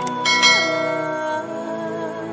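Intro music: a held synthesizer chord that glides to a new chord about half a second in. A mouse-click sound effect comes at the very start, and a bright bell chime sounds soon after as the notification bell is clicked.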